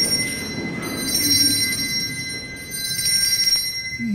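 Altar bells shaken three times, each a burst of bright, high, steady ringing with short breaks between, as the host is shown before communion.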